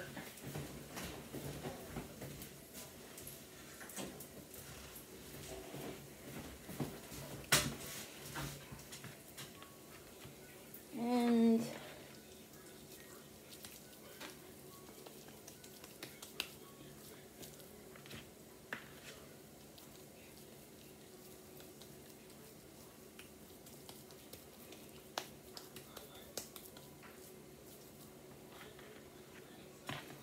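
Quiet kitchen handling: scattered light clicks and knocks, and soft pats as raw ground beef is pressed into burger patties by hand, over a faint steady low hum. A short voice-like hum sounds around eleven seconds in.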